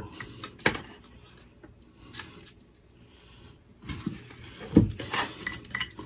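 Scattered small clicks, taps and knocks of a hot glue gun and small parts being handled on a workbench, busier near the end with one dull thump.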